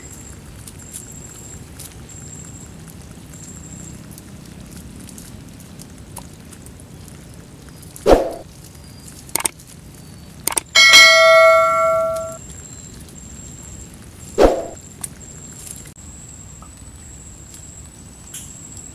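A notification-style sound effect from an on-screen subscribe-button animation: a couple of mouse clicks followed by a bright bell-like ding that rings for about a second and a half near the middle. Two sharp knocks, one a little before and one a few seconds after the ding, stand out against a faint steady background.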